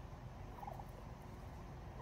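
A soft, brief call from white domestic turkeys about two thirds of a second in, faint over a low outdoor background.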